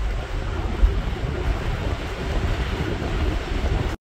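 Strong wind buffeting the microphone in gusts, a loud, uneven low rumble.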